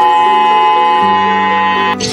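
Steady two-tone alert signal, held for about two seconds and cut off at the end, part of a tsunami early-warning system test. Background music plays underneath, with a lower note coming in about a second in.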